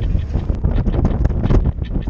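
Strong wind buffeting an action camera's microphone: a loud, gusty low rumble that rises and falls.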